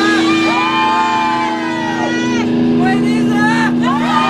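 Live rock band holding one sustained chord while voices shout long rising-and-falling yells over it, in two waves.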